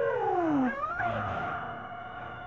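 A sudden loud wailing cry. Its pitch slides down, sweeps sharply up about a second in, then falls away again.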